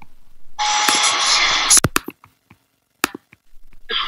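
An elevator's alarm bell ringing for about a second, starting about half a second in, followed by a few sharp clicks.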